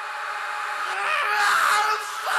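A person's drawn-out wordless vocal sound, with gliding pitch, growing louder and loudest in the second half.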